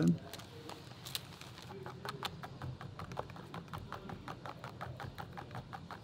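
Light clicks in quick succession, about three or four a second, as a plastic spoon stirs waffle batter and knocks against the sides of a plastic tub.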